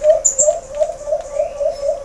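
A dove cooing in a quick, even run of short low notes, about six a second.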